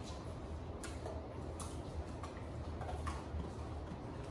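A pit bull at its bowl, chewing and licking its lips: a few sharp clicks, roughly one a second, over a low steady hum.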